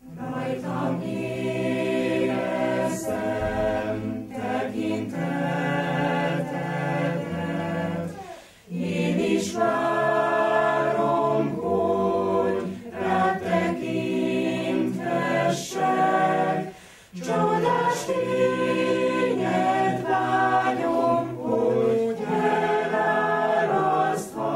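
A choir singing a hymn in several voices, in phrases separated by short breaks.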